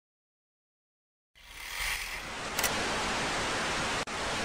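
Total silence, then about a second and a half in a steady static hiss starts up, with one brief sharp click a little past halfway: an added noise sound effect for a logo outro.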